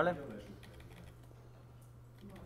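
A few faint, short clicks from a computer keyboard near the end, over a low steady hum.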